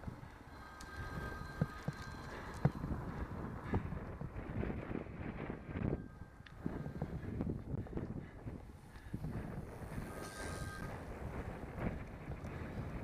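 Wind rushing over the microphone of a camera mounted on a moving road bicycle, with tyre-on-asphalt rumble and scattered small knocks and rattles from the bike.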